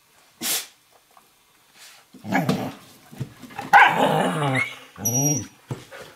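Dogs play-wrestling, growling and giving growly barks, mostly in the second half, with a short huff about half a second in. It sounds fierce but is play, not aggression.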